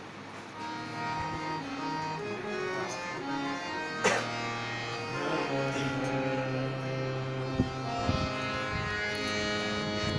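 Harmonium playing a slow bhajan melody of held, reedy notes that step from pitch to pitch. A sharp knock about four seconds in, and a couple of smaller knocks near the end.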